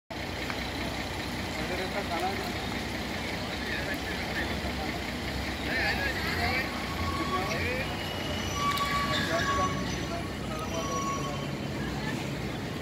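Steady din of road traffic with indistinct voices mixed in, and a few short steady tones in the second half.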